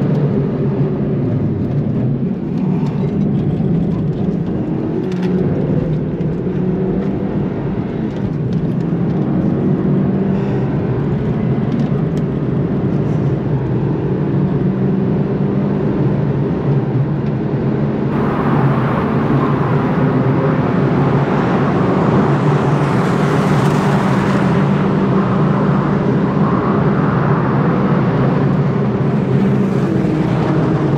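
Suzuki Swift Sport's 1.4-litre turbocharged four-cylinder engine, fitted with an upgraded turbo, running hard with a steady engine note, heard from inside the cabin with road noise. About eighteen seconds in, a loud rushing hiss joins in abruptly and stays.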